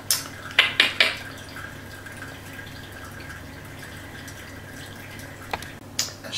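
Ninja Coffee Bar finishing its brew: coffee dripping and trickling from the brew basket into a glass mug, with a few sharper drips in the first second and another about five and a half seconds in, over a faint steady tone.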